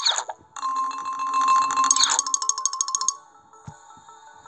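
Sound effect from a children's animated story app: a brief falling swoop, then a bright chime-like tone with a fast flutter for about two and a half seconds, stopping about three seconds in.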